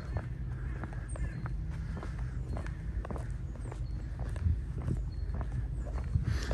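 Footsteps on stone paving at a steady walking pace, about two steps a second, over a low outdoor background rumble.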